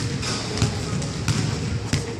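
A basketball being dribbled on a hardwood gym floor, with a steady bounce roughly every two-thirds of a second.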